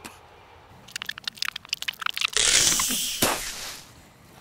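Film sound effects: a quick run of sharp cracks and crunches, then a loud rushing crash with a knock in it that fades away over about a second and a half.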